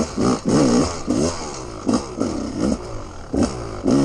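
Dirt bike engine revved up and down again and again, the throttle opened and shut every half second or so, its pitch rising and falling with each burst.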